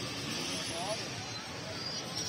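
Ice-shaving machine turning a block of ice against its blade, a steady grinding hiss of ice being shaved, with background voices.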